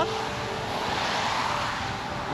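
A car passing on a wet road: a tyre hiss that swells and then fades.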